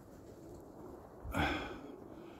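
A short breath, a sniff or exhale, close to the microphone about a second and a half in, over faint outdoor background.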